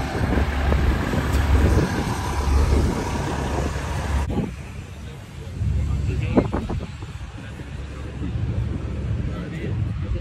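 Low rumble of vehicle engines with indistinct voices in the background. The sound changes abruptly about four seconds in, when the higher noise drops away and the low rumble carries on.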